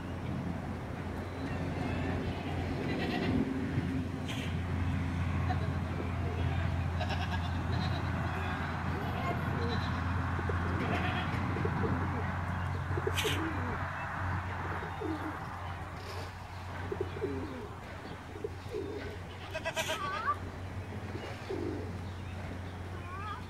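Barnyard sounds: goats bleating and a pigeon cooing, with a small child's short vocal sounds over a steady low hum.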